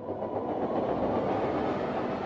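Sustained, rough, grainy rumbling noise of a cinematic trailer sound effect, swelling in and holding steady, the closing tail of the trailer's soundtrack as it begins to fade.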